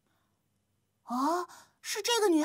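Near silence, then about a second in a young girl gives one short, breathy voiced exclamation, rising in pitch. Speech starts just before the end.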